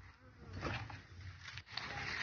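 A flying insect buzzing faintly close by, with a few soft ticks and rustles.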